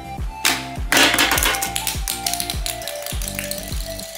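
Background music with a steady beat, over which a plastic pop-up barrel toy goes off: a short rattly snap about half a second in, then a louder clatter around a second in that dies away quickly as the Minion figure is launched out.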